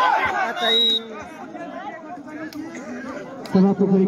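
Crowd of spectators shouting loudly for about the first second, then many voices chattering.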